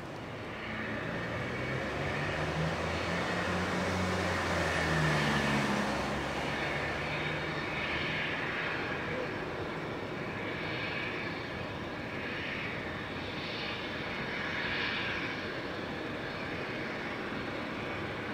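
Twin turbofan engines of a Cessna UC-35D Citation Encore business jet at taxi power, a steady whine and rush that is loudest about five seconds in.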